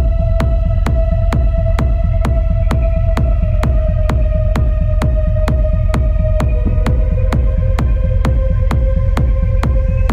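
Hard dark techno: a heavy bass beat with sharp clicks about two a second, under a held synth tone that slowly sinks in pitch and steps down about two-thirds of the way through.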